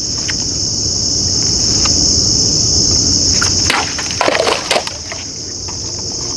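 Heavy Odenwolf machete swung in a static cut through two standing plastic water bottles: a quick cluster of sharp cracks and spatter about four seconds in. Insects chirr steadily at a high pitch throughout.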